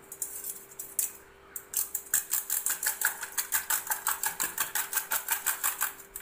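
A coil-spring whisk beating raw eggs in a stainless steel bowl: fast, rhythmic clicking as the whisk strikes the metal, about five strokes a second. It starts with a few scattered strokes and settles into a steady rhythm after about a second and a half.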